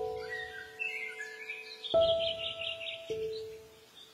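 Slow, calm instrumental music, single sustained notes that strike and slowly fade, with a new note about two seconds in and another about three seconds in. Songbirds chirp over it, with a quick trill a little past the middle.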